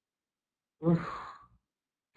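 A man's single sigh, starting with a brief voice and trailing off into a breathy exhale of about half a second, as he catches his breath while reading aloud.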